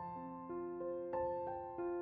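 Soft background piano music: a slow melody of single notes, about three a second, each struck and left to ring.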